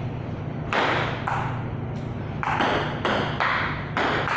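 Table tennis ball struck back and forth in a rally: about six sharp clicks of the ball off paddles and table, spaced roughly half a second apart, over a low steady hum.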